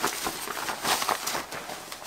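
Shiny black leather shorts rustling and crinkling as they are unfolded and shaken out, an irregular run of soft crackles.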